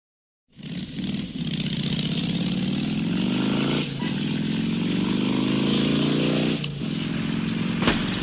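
Motorcycle engine accelerating through the gears: its pitch climbs steadily and drops back at two gear changes, about four and about seven seconds in.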